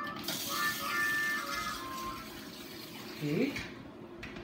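Water spraying from a salon shampoo-bowl hose in a steady hiss, which stops shortly before the end. Background music runs under it and fades out about halfway through. A brief rising voice sound comes a little after three seconds in.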